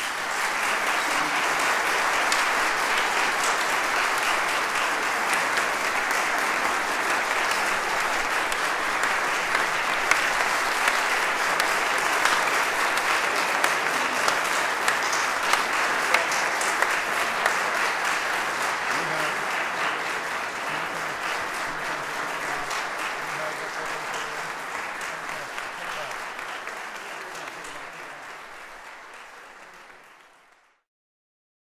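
Audience applauding at the end of a band performance. The clapping starts at full strength, holds steady with a few louder individual claps or calls partway through, then slowly fades away over the last ten seconds or so.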